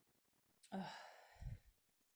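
A woman's drawn-out sighing "ugh" starts a little over half a second in and lasts about a second, as she ponders her answer. There is a short low thud near its end.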